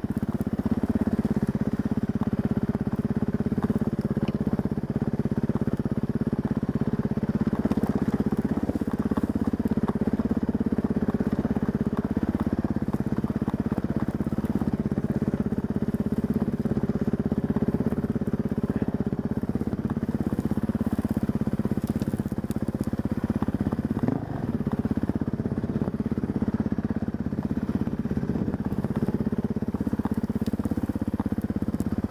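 Husqvarna dirt bike engine running steadily at a low, fairly even speed on a grassy, muddy trail, with a brief dip in engine sound near the end.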